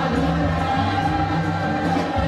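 Live gospel praise music: a group of voices singing over a band with a steady bass line.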